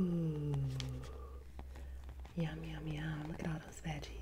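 A woman's voice making two drawn-out "mmm" hums: the first slides down in pitch, the second is held level.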